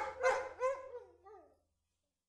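A dog barking: three sharp barks in the first second, then fainter yelps that trail off.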